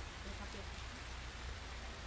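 Steady hiss of rain, with a low steady rumble beneath it.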